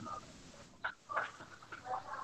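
A few faint, short animal calls, coming separately in the background.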